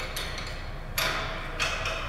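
Metal clicks as the clamp holding the auger's shaft bushing is worked loose and lifted off: a sharp click about halfway through, then a second, softer clack.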